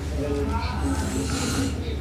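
A voice speaking or reciting in words the recogniser did not write down, over a steady low hum.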